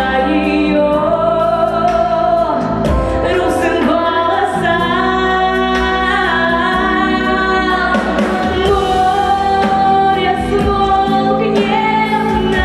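A young woman's solo voice singing a ballad into a handheld microphone over backing music, holding long notes.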